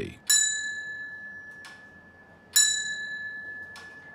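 Two rings of the railway ball token instrument's signalling bell, about two seconds apart, each a clear ding that fades away slowly. The bell is the signal passed to the partner instrument at the next station, marking the single line as occupied.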